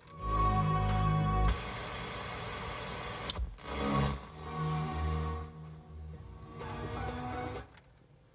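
Music from a phone playing through the car's factory Bose stereo via an FM modulator on 87.9 MHz. It is loud for about a second and a half, then softer, and cuts off near the end as the modulator's switch is turned off.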